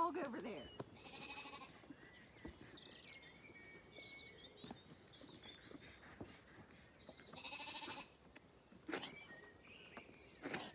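Zwartbles lambs bleating: a bleat about a second in and another near the eight-second mark, with fainter calls between.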